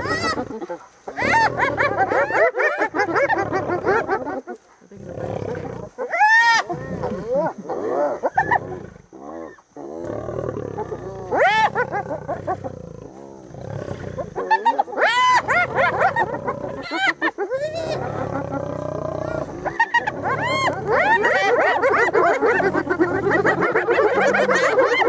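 Spotted hyenas calling excitedly, with several steep rising calls, over the growls of lionesses fighting over a warthog carcass.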